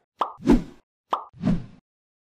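Two cartoon pop sound effects about a second apart, each a short click followed by a soft pop, marking the taps of a subscribe-button animation.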